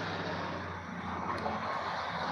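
Steady background noise, an even hiss with a low hum underneath, with no distinct events.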